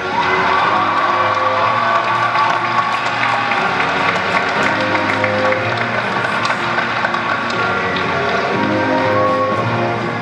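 Audience applause and cheering breaking out suddenly over a steady instrumental backing track that keeps playing with held notes.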